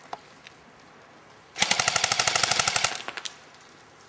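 Airsoft gun firing a full-automatic burst of rapid, evenly spaced shots, about fifteen a second for over a second, starting about one and a half seconds in, followed by a few single clicks.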